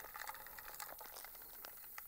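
Faint, scattered crackling and ticking of dry clay and silt grit being pressed by hand into a steel AK magazine.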